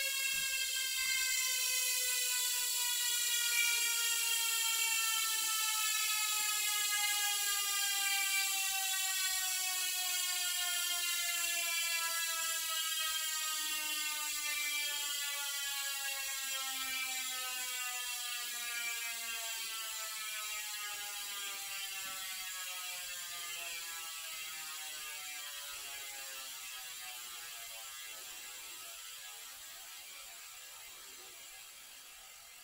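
Mountain bike rear freehub buzzing as the rear wheel spins freely: a fast ratchet whir whose pitch falls slowly and steadily while it fades, as the wheel loses speed.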